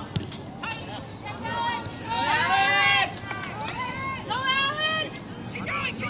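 High-pitched voices shouting and calling out across a soccer field during play: several separate calls, the loudest and longest about two seconds in, another shortly after four seconds.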